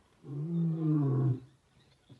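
Male lion roaring: one deep, pitched roar of a little over a second that drops in pitch as it ends.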